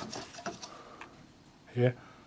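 A few faint light clicks and handling sounds from the round white plastic cover of an immersion heater being moved by hand. One spoken word comes near the end.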